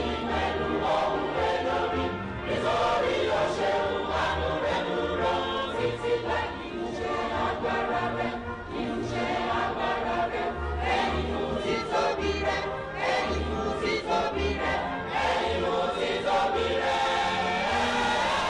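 Choir singing with instrumental accompaniment, a bass line moving underneath.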